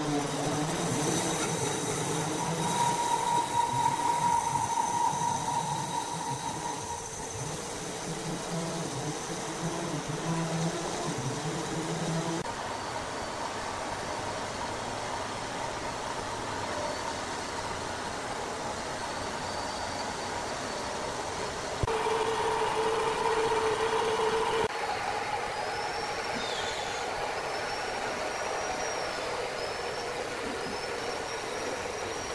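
Horizontal band sawmill running, its blade cutting lengthwise through a large hardwood log with a steady machine noise. A whine rises over it for a few seconds early on and again, lower and louder, a little after twenty seconds in.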